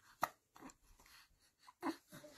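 Two short, sharp clicks about a second and a half apart, the second the louder and carrying a brief low voiced note.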